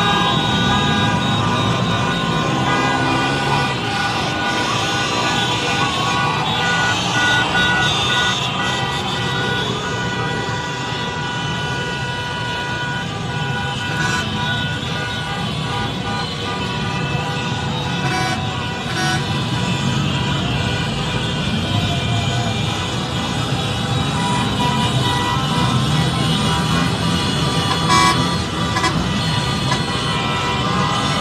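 Many car horns honking at once in celebration, over the din of a street crowd and traffic, with a single sharp crack near the end.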